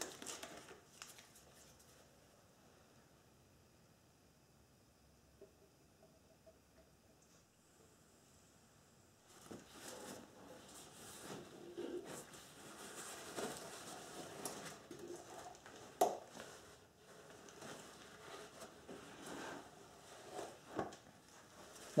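Faint handling noise from gloved hands working a long plastic funnel in a transmission filler tube: irregular rustling with a few light knocks. It comes after several seconds of near silence.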